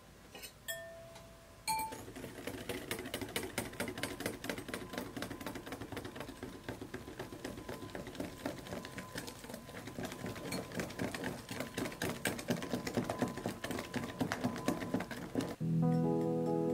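A mixing utensil stirring a thick batter in a glass bowl: rapid, irregular clicks and scrapes against the glass that carry on for most of the time and get slowly louder. It begins with two ringing clinks of glass on glass, and music comes in just before the end.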